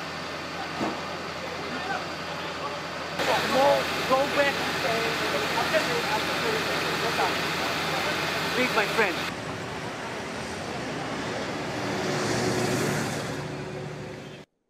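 Outdoor roadside sound: people talking in the background through the middle, then a motor vehicle passing by near the end, rising and fading.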